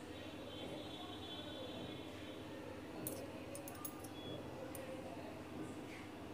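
Low room noise with a cluster of faint, light clicks about three seconds in: a metal spoon set into a glass cup.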